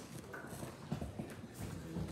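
Footsteps of hard-soled shoes on a wooden floor: a few irregular sharp knocks.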